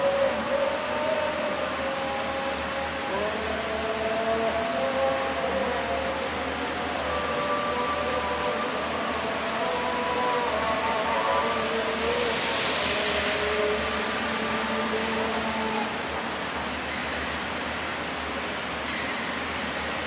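Slow, held tones that step to new pitches every second or two, several sounding together, over a steady hiss. The hiss swells briefly about twelve seconds in.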